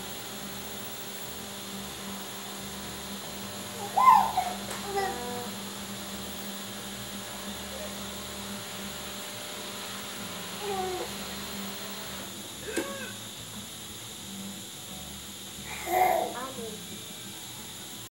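A baby's short coos and squeals, the loudest about four seconds in and again near the end, with smaller ones in between, over a steady background hum.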